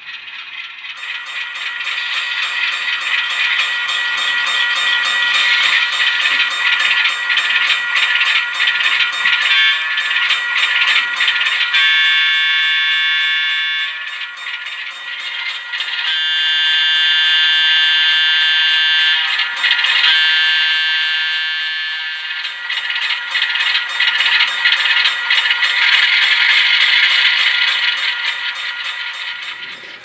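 Model railroad grade-crossing bell from a small speaker, ringing in rapid, even strokes while the crossing is active. Around the middle, an Alco RS-3 sound-decoder horn sounds a few long blasts over the bell.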